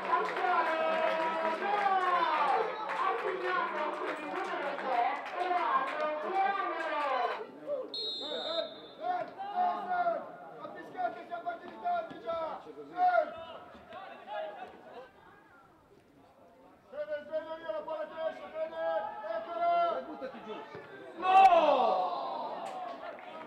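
Several people's voices calling and shouting at a football match, mostly unclear, with a quieter lull about two-thirds of the way in and a loud shout just before the end.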